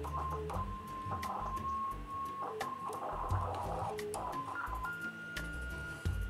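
CB radio receiver's speaker sounding a steady beat tone of about 1 kHz from a signal-generator carrier received in USB. The tone wavers and breaks as the quartz crystal resonator is touched, then jumps higher a second before the end. The unearthed crystals change capacitance when touched and pull the radio off frequency.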